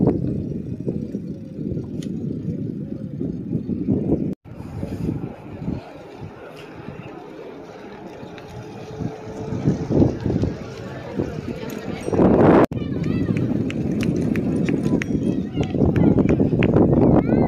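Outdoor street ambience with wind rumbling on a phone microphone and indistinct voices, in several short sections that break off abruptly. The stretch in the middle is quieter.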